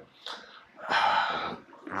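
A man's breath, a noisy exhale lasting just under a second, in a pause between sentences.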